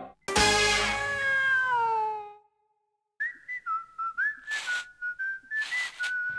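A held note with several tones starts suddenly and slides downward, fading out over about two seconds. After a second of silence comes a short whistled tune of quick notes, broken twice by a brief hiss.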